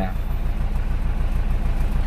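Isuzu Panther diesel engine idling steadily, a low, even pulsing with no other event.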